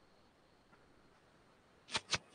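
Quiet room tone with a faint tick a little before the middle, then one sharp click near the end.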